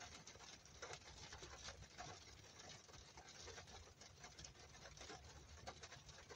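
Heavy rain pattering faintly on a parked car's roof and windows, heard from inside the cabin as a dense spatter of tiny drop hits.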